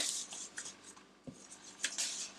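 Soft rustling of thin baklava phyllo sheets and their plastic wrapping being unfolded by hand, at the start and again near the end.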